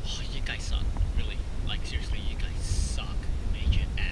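A man whispering, heard as short breathy hisses and consonants, over a steady low rumble.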